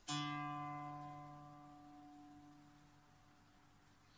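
A single guqin note sounded with the left-hand zhao qi (爪起) technique: the flesh of the left thumb pulls the string upward. The note starts sharply and fades slowly over the next few seconds.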